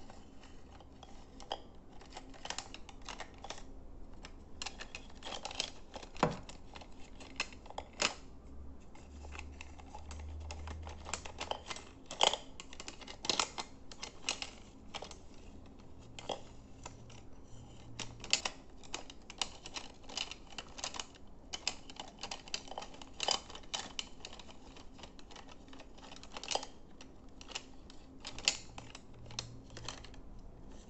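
Irregular light taps and clicks of small objects handled and tapped close to the microphone, a few per second at uneven spacing, with some sharper clicks standing out.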